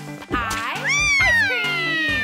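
Children's-song backing music with a steady beat. About a second in, a long high wail with a slow downward glide in pitch comes in over it: a cartoon girl's cry of dismay.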